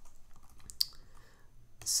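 A few faint clicks of a computer keyboard, with one sharper click a little under a second in.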